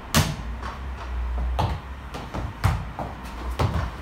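A ball being kicked back and forth and bouncing on a rubber gym floor in a foot tennis rally: sharp thuds about a second apart, the first the loudest.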